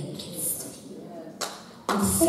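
A woman speaking softly into a microphone in a large hall, with a short sharp sound about a second and a half in and louder speech resuming just before the end.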